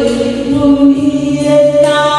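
A woman singing a slow Vietnamese song into a handheld microphone over musical accompaniment, holding long notes.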